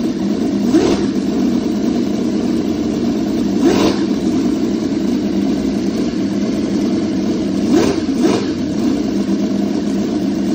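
Miniature ChuanQi V12 model engine running steadily, its throttle blipped by hand four times, giving short rising revs at about one, four and eight seconds in, the last two close together.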